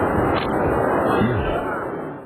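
Stadium crowd at a rugby test match: steady noise of many voices at once.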